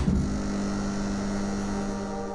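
Synthesized intro sound effect: a steady rushing whoosh with a low steady hum under it, fading slowly.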